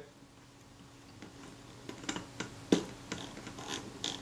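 Small mechanism of a Kodak Retina IIa camera being worked by hand at its top plate: a run of small, irregular sharp clicks starting about a second in.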